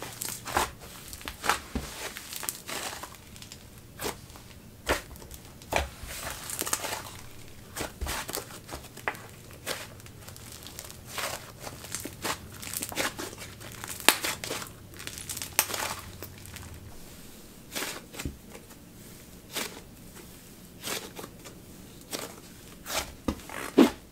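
Thick butter-type clay slime being squeezed and kneaded by hand, giving irregular sizzly crackles and pops as air is pressed through it.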